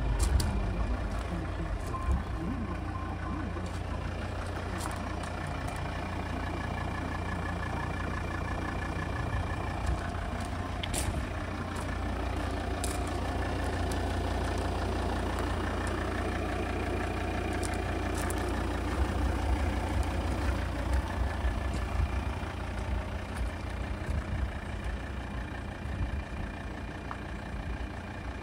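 Volvo XC90 2.4 D5's five-cylinder turbodiesel idling steadily, heard from outside the car, with a few light clicks partway through.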